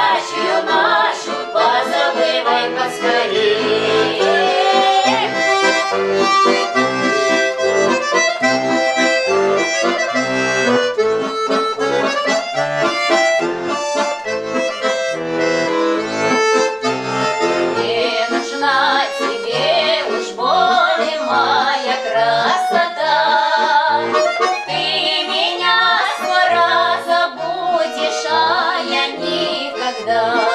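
Accordion playing a Russian folk-song tune on its own, an instrumental passage with melody over chords and hardly any voices.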